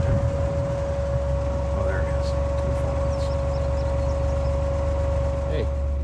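Buggy engine running at low speed: a steady low hum with a constant whine over it, the whine stopping near the end.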